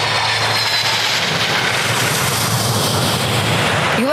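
Jet airliner's engines running: a steady rushing noise with a faint high whine.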